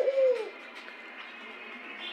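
A white domestic dove cooing: one low note falling in pitch, fading out about half a second in. After it there is only faint background hiss.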